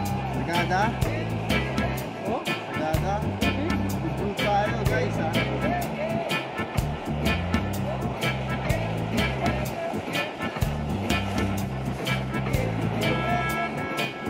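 Background music: a song with singing over a steady beat and a stepping bass line.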